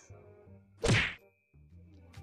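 Video-editing transition sound effect: a single short whack-like swoosh about a second in, with a low tone falling in pitch. Faint background music runs under it.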